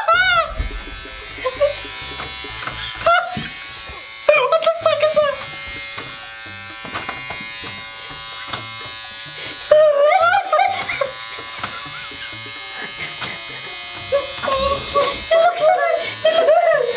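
Electric hair clippers buzzing steadily while cutting a man's hair. Over the buzz, the man cries out loudly several times.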